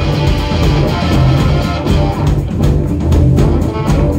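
Rock band playing live without vocals: electric bass, electric guitar and drum kit.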